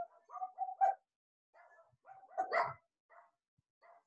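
A dog barking in a series of short barks, about four in quick succession at the start and the loudest about two and a half seconds in, heard over a video call.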